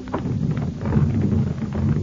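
Low rumbling organ chord closing a music bridge between scenes.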